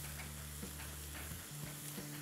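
Sliced onions frying quietly in oil in a pot, stirred with a wooden spatula that taps lightly against the pot. A low steady hum sits underneath and drops out about one and a half seconds in.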